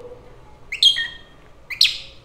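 A pet African lovebird gives two short, high-pitched calls about a second apart, each a sharp high note dropping to a lower one, its mimicked attempt at saying its name, "Ducky".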